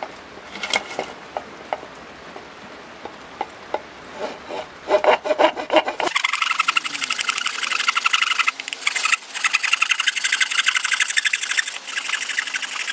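A Japanese hand saw cutting through an old, weathered deer antler. Scattered light knocks and scrapes come first as the saw is set, then rapid, steady rasping saw strokes from about halfway in, broken twice by short pauses.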